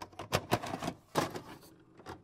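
A quick, irregular run of sharp mechanical clicks and clacks, several a second, loudest twice early on and once just after a second in.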